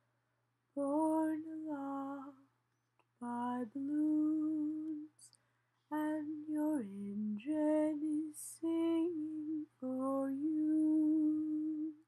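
A woman singing a lullaby melody unaccompanied, in five long phrases of held notes with short breaths between them.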